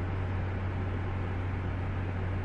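Steady low hum with an even hiss of background noise, unchanging throughout: the room tone of the space.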